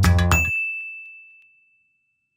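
The intro music of a logo sting stops on a final hit, leaving a single high ding that rings on and fades away within about a second.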